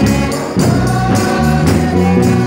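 Dance music with a steady beat and choir-like singing.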